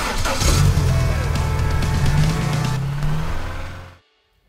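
Intro music mixed with a car engine revving sound effect, the engine note rising in pitch, all cutting off suddenly at the end.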